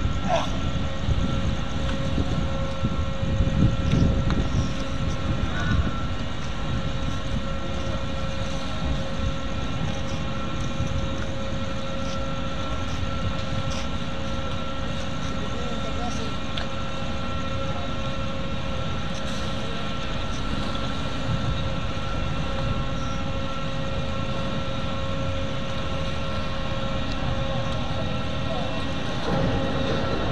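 Docked roll-on/roll-off ferry's engines and generators running steadily: a low rumble with a steady hum over it.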